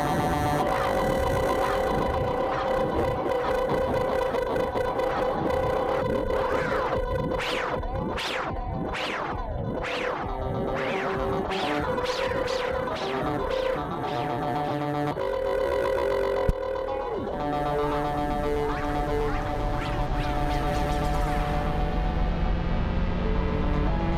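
Ambient loop-processed music for violin and ukulele: held tones layered over one another, shifting pitch in steps, with a run of quick swooping sweeps in the middle and a single sharp click about two-thirds of the way through.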